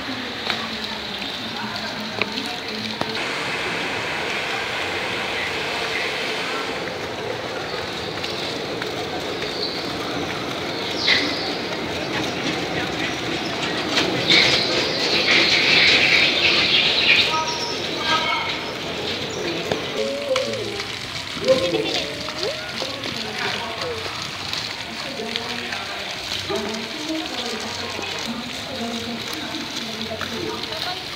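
Indistinct voices over a steady background hiss, with a louder rushing noise for a few seconds about halfway through.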